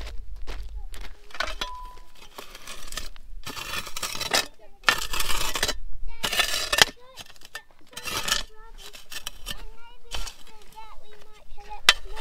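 A plastic shovel scraping and digging through campfire ash and coals to uncover a damper baked in them. It makes a series of separate gritty scrapes a second or two apart, with clinks of charcoal and rock.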